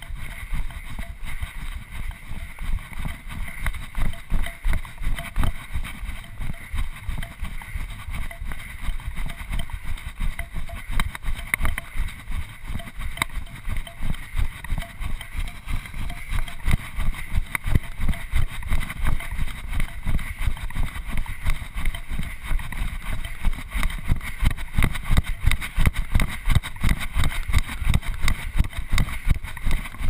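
A runner's footfalls on a dirt trail, heard as a quick, even rhythm of low thumps as the body-worn camera jolts with each stride, growing stronger in the second half.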